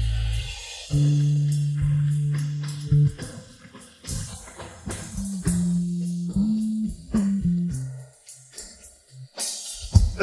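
Instrumental break of a rock backing track with the lead guitar removed: electric bass playing a few long, held low notes over sparse drum and hi-hat hits. It thins out near the end before a loud drum and cymbal hit brings the full band back in.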